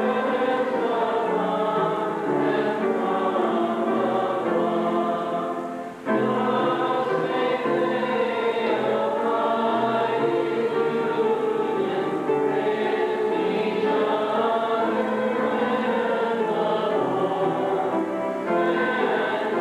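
A church congregation singing a hymn together, in sustained notes, with a brief break about six seconds in.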